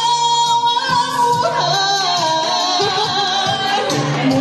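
A woman singing into a microphone over musical accompaniment, holding one long note, then moving into a wavering phrase with vibrato about a second and a half in.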